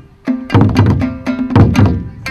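Shamisen plucked with a bachi plectrum, sharp twanging notes, joined about half a second in by loud low taiko drum strikes, which peak again near the end.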